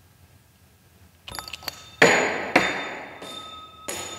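Liquid-nitrogen-cooled brass ring flung off a Thomson jumping-ring coil and landing on the bench: a short clatter, then two loud metallic impacts about half a second apart. Each impact rings on with steady high tones as the ring rolls away.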